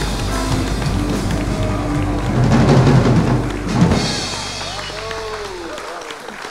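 Live jazz trio of grand piano, double bass and drum kit playing, loudest just before the middle with busy drumming. The playing stops about four seconds in with a ringing cymbal, and a voice is heard near the end.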